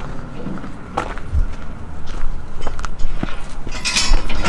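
Footsteps on gravel, a handful of uneven steps, over a low steady hum.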